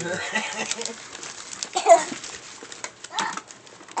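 A small child's wordless vocalising, with a short high-pitched squeal about two seconds in and scattered light crinkles and clicks.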